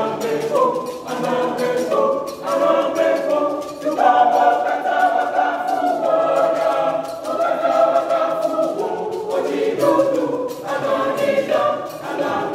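A junior church choir of children and teenagers singing a song together, many young voices holding and changing notes.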